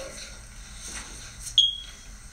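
A single short, high-pitched electronic beep about one and a half seconds in, over faint room noise.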